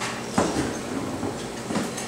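Steady background noise of a luncheon room, with two brief knocks, the first about half a second in and a weaker one near the end.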